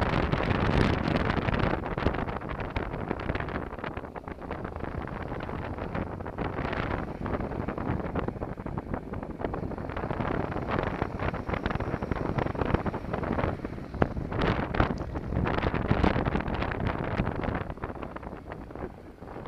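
Wind buffeting the microphone of a motorcycle rider's camera, over the running of a Honda NC700's parallel-twin engine and tyre noise, at moderate road speed. The buffeting comes in louder gusts in the second half.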